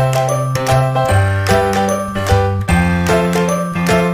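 Background music: a light tune of pitched notes over a bass line that moves from note to note.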